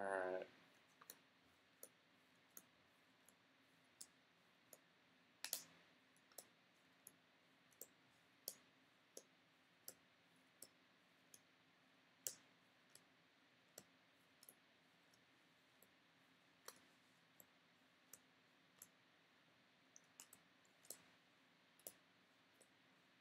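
Faint, regular clicks of Bowman Chrome baseball cards being flicked one at a time from the front to the back of a stack, about one click every 0.7 seconds.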